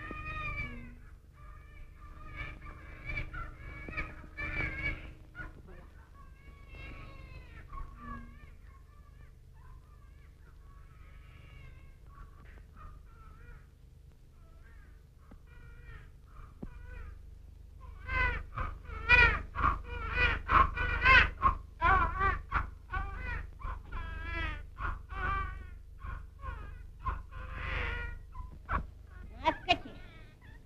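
A voice wailing and crying in wavering cries, faint at first, then louder and quicker from about eighteen seconds in, over the steady low hum of an old film soundtrack.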